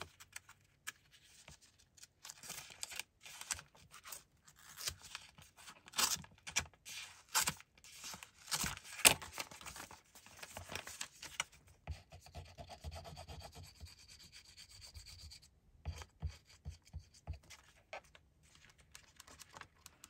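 Hands handling paper and card stock on a cutting mat: irregular rustling, sliding and rubbing with scattered light taps, the sharpest about nine seconds in.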